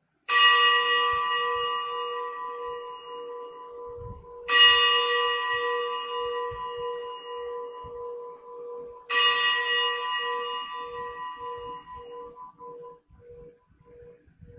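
A bell struck three times, about four and a half seconds apart, each stroke ringing on and fading slowly with a pulsing low hum. It is the bell rung at the elevation of the chalice, just after the words of consecration at Mass.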